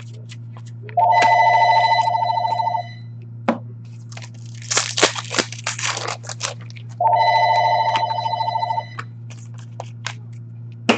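A telephone rings twice, each ring a warbling trill of about two seconds, the second starting six seconds after the first. Between the rings there is a spell of crinkling and rustling from trading cards and their pack wrappers being handled, over a steady low hum.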